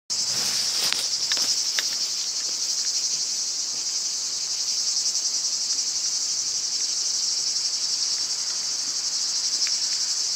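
A chorus of cicadas: loud, steady, high-pitched buzzing that runs unbroken, with a few faint clicks in the first two seconds.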